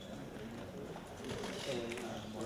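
A low, indistinct voice murmuring, with no clear words.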